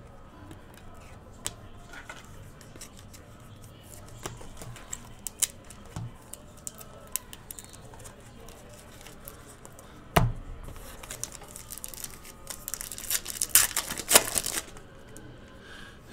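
Trading cards and packs handled on a table with scattered light clicks and taps, a sharp knock about ten seconds in, then a 2019 Panini Prizm Draft Picks hobby pack wrapper being torn open with loud crackling for about two seconds near the end.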